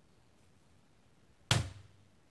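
Near silence, then about a second and a half in a single sharp clack: the Chuwi Hi12 tablet swinging down on its keyboard dock's hinge and landing flat on the keyboard, because the hinge is too weak to hold the tablet's weight.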